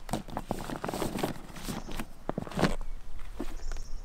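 Handling noise as a pressure washer hose and accessories are packed into a bag: a run of irregular rustles and knocks that dies down about three seconds in.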